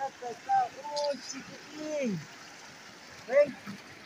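A man's voice in a few short wordless exclamations, over the steady rush of a shallow, fast-flowing mountain river.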